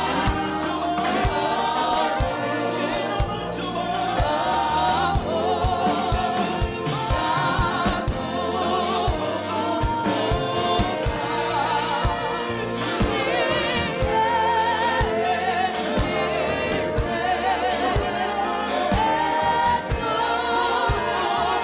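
Gospel vocal group singing in harmony, several voices with vibrato, backed by a band with a bass line and a steady drum beat.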